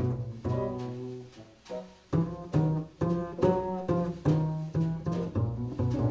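Upright double bass played pizzicato in a jazz bass solo: a line of plucked notes, about two or three a second, with a short pause about one and a half seconds in.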